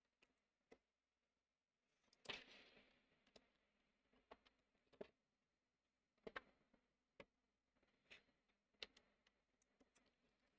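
Near silence: room tone with about ten faint, irregular clicks and taps, one about two seconds in followed by a brief rustle.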